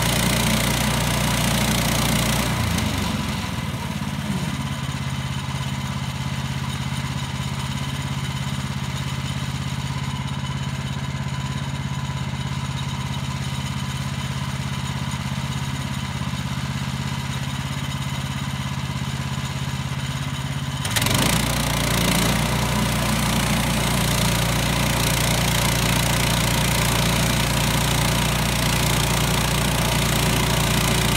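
Gasoline engine of a portable bandsaw mill running steadily. It drops to a lower, quieter speed about two and a half seconds in and speeds back up about twenty-one seconds in.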